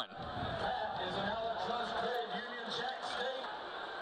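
Football stadium crowd noise: a steady din of many indistinct voices.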